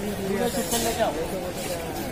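Voices of people talking nearby over the general noise of a busy outdoor street market, with a short hiss a little under a second in.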